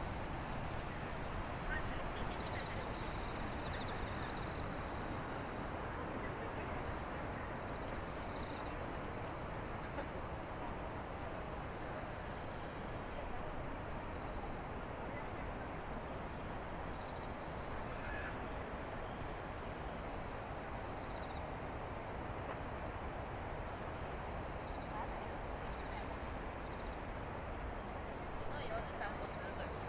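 Night insects, crickets or similar, keeping up a steady high-pitched trilling from the grass, over a low steady rumble of background noise.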